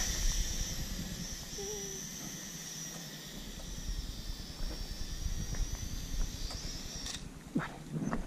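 Small toy quadcopter's motors and propellers giving a thin high whine that wavers in pitch as it is flown against the wind, cutting off about seven seconds in as the drone comes down and the throttle is cut. Wind rumbles on the microphone throughout.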